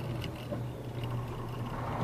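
Steady low engine drone and road noise heard inside the cab of a moving delivery truck.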